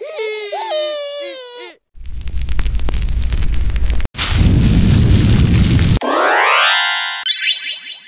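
Cartoon meme-cat crying sound effect, a wavering wail, for about two seconds, followed by about four seconds of loud noisy rushing effects with a deep rumble, broken by a brief gap. Near the end, a rising magical sweep sound effect glides quickly up in pitch.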